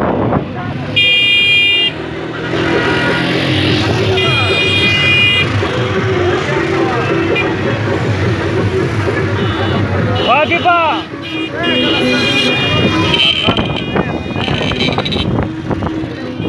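Car horns honking in several long blasts, about a second in, around four to five seconds in, and again late on, over the running engines of a slow-moving car convoy, with voices mixed in.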